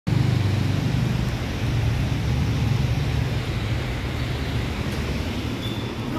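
Steady low background rumble, with a short high beep just before the end.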